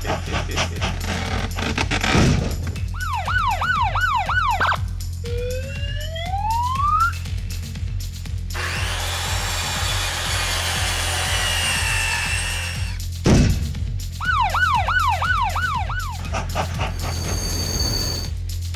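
Cartoon sound effects over background music with a steady bass: a fast police-siren wail sounds twice, each time followed by a rising whistle-like glide. In the middle, a circular saw runs for about four seconds.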